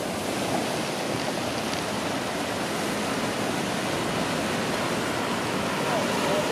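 Steady rushing and splashing of a large fountain's water jets, mixed with passing city traffic.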